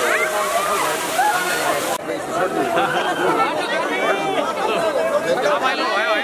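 Water splashing and pouring over people amid many overlapping voices of an excited crowd. The splashing cuts off abruptly about two seconds in, leaving the crowd's voices.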